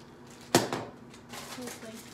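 A bagged plastic gummy-bear mold tossed aside, landing with one sharp knock about half a second in, followed by a faint rustle of plastic packaging and cardboard as the next item is dug out of the box.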